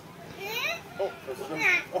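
Several audience voices, children's among them, calling out short vocal sound effects: brief overlapping cries that glide up and down in pitch.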